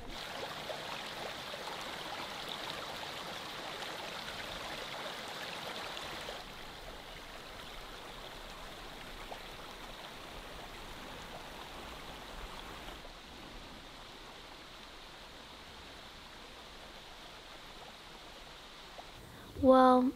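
Steady rushing outdoor ambience with no distinct events, stepping down in level twice, at about six and about thirteen seconds in.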